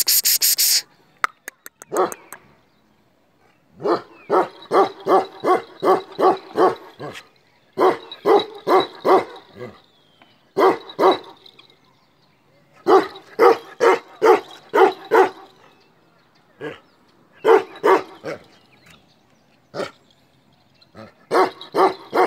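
Male Kashmiri Eksaya livestock guardian dog barking in rapid runs of about three barks a second, the runs broken by short pauses. A brief loud crackling burst comes right at the start.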